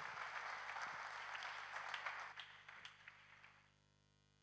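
Audience applauding, a dense patter of clapping that dies away near the end.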